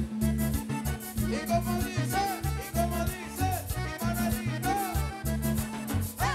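Live band music: accordion leading over bass guitar and drums, with a steady danceable beat.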